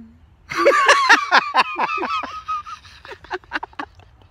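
A person laughing hard: a rapid run of high-pitched "ha" bursts starting about half a second in, then softer, shorter laughs near the end.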